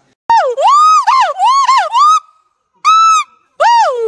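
Lar gibbon giving its territorial call: a series of loud, clear whooping hoots, each note sliding up and down in pitch. The hoots come in quick runs with short pauses between them, one pause after about two seconds and another near three and a half seconds.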